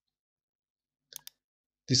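A computer mouse click, heard as two quick ticks close together (press and release) a little over a second in, picking a point on a model in CAD software; around it is near silence.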